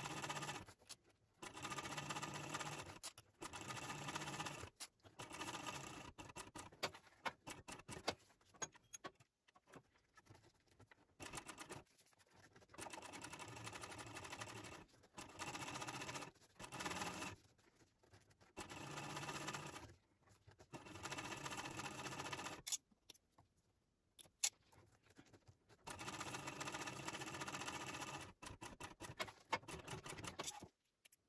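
Techsew 2750 Pro industrial cylinder-arm sewing machine stitching along a bag strap. It runs in short bursts of one to three seconds, stopping and starting many times as the strap is guided under the foot.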